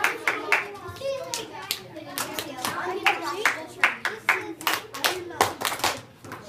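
Sharp hand claps, about twenty in an irregular run and some in quick pairs, over the overlapping chatter of children's voices in a classroom. The claps and chatter die away near the end.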